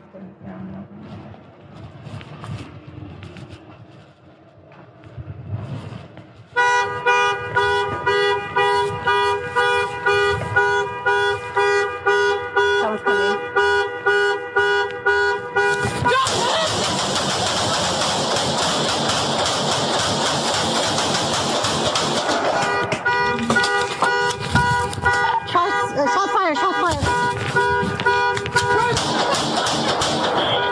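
An alarm sounding a pulsing horn-like tone, about three blasts a second, which starts about six seconds in. Several seconds of loud rushing noise break it midway, and it is heard through a police body camera's microphone.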